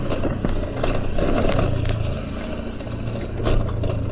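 Motor vehicle engine running at a low, steady speed: a low hum with a few faint clicks.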